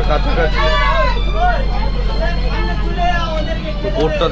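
Steady low drone of a six-cylinder river launch engine while under way, with people's voices talking over it.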